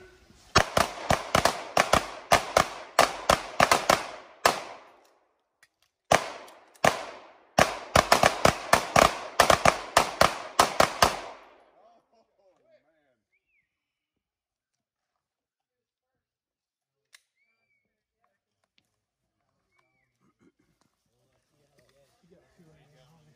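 Rapid gunfire from several shooters firing at once on a timed firing line: a string of roughly thirty-odd sharp shots, broken by a pause of about a second and a half around five seconds in. It ends abruptly about eleven seconds in.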